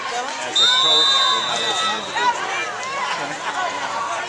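A referee's whistle blown once: a steady, high-pitched tone of about a second and a half, starting about half a second in. Crowd voices from the stands chatter and call out around it.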